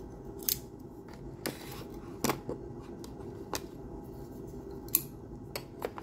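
Folding pocketknives being handled, giving several sharp metal clicks at irregular intervals over a few seconds.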